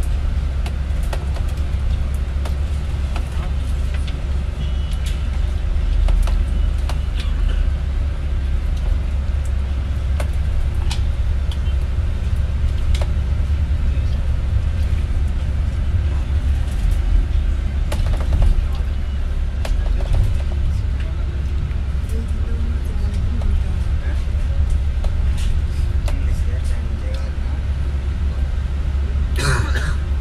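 Steady low rumble of a moving vehicle heard from on board, with light clicks and rattles throughout and faint indistinct voices.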